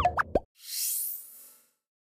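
Animated end-card sound effects: a quick run of three or four bubbly pops, each bending in pitch, followed by a high, falling swish that fades out after about a second.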